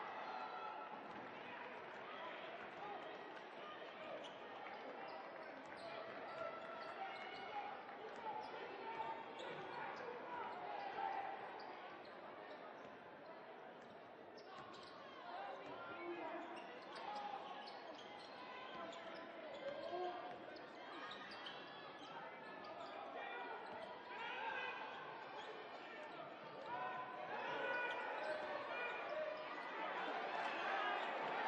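Basketball game sounds: a ball bouncing on a hardwood court under a steady murmur of crowd voices, with the crowd getting louder near the end.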